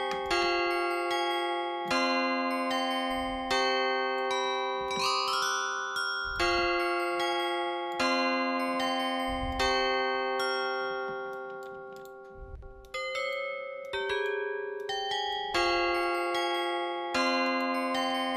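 Omnisphere software synth played from the FL Studio piano roll: a slow trap chord progression with a light top melody, chords struck about every one and a half seconds and fading between strikes. A short rising sweep comes about five seconds in, and just past the middle the sound thins and dips before the loop starts again.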